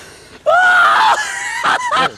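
A person's high-pitched yell, starting about half a second in and held briefly, followed by shorter cries.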